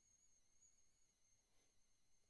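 Near silence: faint room tone between spoken phrases.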